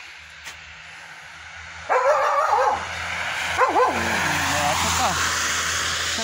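A dog barking behind a garden fence: a loud burst of barks about two seconds in, more barks about a second and a half later, then a falling whine.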